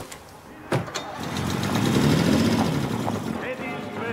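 A car door shutting with a sharp knock about three-quarters of a second in, then a vintage saloon car's engine starting and running loudly for about two seconds. Music with singing comes in near the end.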